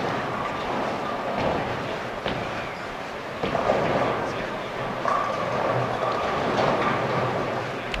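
Bowling alley ambience: a steady rumble of balls rolling on the lanes and pins clattering faintly across many lanes, under a murmur of the crowd.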